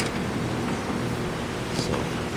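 Poulan Pro riding lawn mower's engine running steadily as the mower drives along, a continuous low hum.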